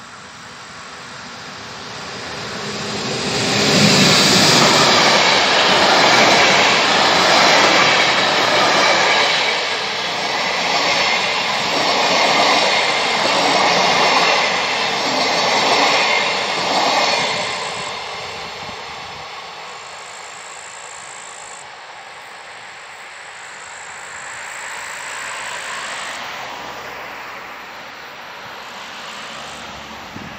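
ÖBB passenger train of City Shuttle coaches passing close by, wheels running on the rails. The noise builds from about two seconds in, is loudest from about four to seventeen seconds as the coaches go past, then fades away.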